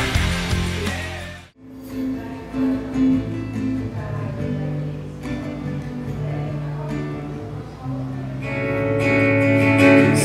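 Rock music fades out about a second and a half in. Then an acoustic guitar is played, notes held and ringing, at a soundcheck.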